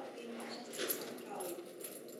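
A woman's voice speaking softly, reading aloud.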